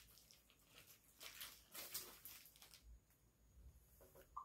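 Near silence: room tone with a few faint, short rustles and taps, the clearest near the middle.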